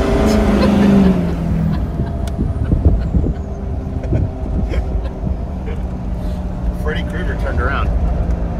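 Engine and road noise heard inside the cabin of a moving SUV. A loud, steady engine drone fades out over the first two seconds, leaving a quieter steady rumble, with a few light clicks.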